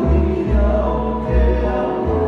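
Live acoustic Hawaiian trio: two acoustic guitars strumming and an upright bass playing deep notes that change about every second, with male voices singing in harmony.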